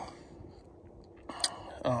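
Quiet background with a brief sharp click and a short breathy rush about a second and a half in, then a man's voice starting near the end.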